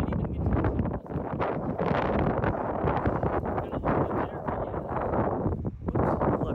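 Wind buffeting the microphone: a continuous rushing rumble with a brief lull about a second in.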